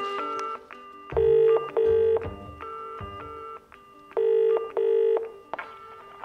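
Telephone line ringing in the British double-ring pattern, two pairs of rings three seconds apart: the ringing tone of an outgoing call waiting to be answered. Light music plays underneath.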